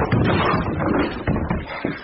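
Radio-drama sound effects of a jammed door being forced in, with a run of irregular crashes and knocks and hurried footsteps into the room.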